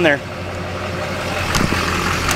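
Duramax diesel V8 in a Chevrolet pickup idling steadily, with a few light knocks near the end.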